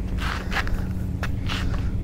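Footsteps of a person walking on a paved sidewalk, about four steps, over a steady low hum.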